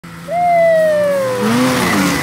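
Snowmobile engine held at wide-open throttle, a whisky throttle as the rider loses control. Its loud high whine drops steadily in pitch as the sled comes past close by, and a rougher rush of noise follows near the end.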